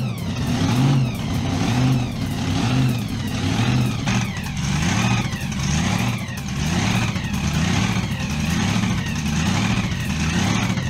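A motor vehicle's engine running close by, swelling and easing about once a second, with a falling whine on each swell.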